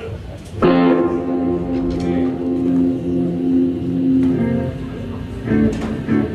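A guitar chord struck once through an amplifier and left to ring for several seconds, followed by a second short chord near the end.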